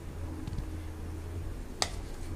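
Thick whipped ice cream mixture being poured from a steel bowl into a glass dish, with a low steady hum underneath and faint soft ticks. One sharp click near the end, the bowl's metal rim tapping the glass dish.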